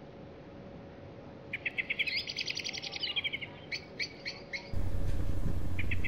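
A small songbird singing: about a second and a half in, a rapid trill of high notes rises and then falls, followed by four short separate notes.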